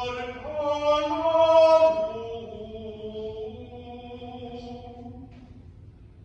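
A single voice chanting liturgy in long held notes that step from pitch to pitch, loudest in the first two seconds and then softer.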